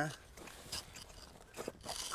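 Faint scraping and crunching as the tip of a hand tool is pushed into soft rock to trench beside a fossil bone, with a few small scratches about a second in and again near the end; the rock gives easily under the tool.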